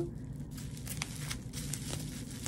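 Plastic bubble wrap crinkling faintly as it is handled and drawn around an object, with a few scattered light crackles.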